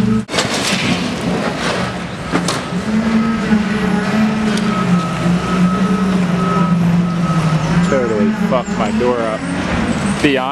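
A vehicle engine runs steadily in a large echoing hall, its pitch rising and falling slightly, with a single sharp knock about two and a half seconds in. Voices come in near the end.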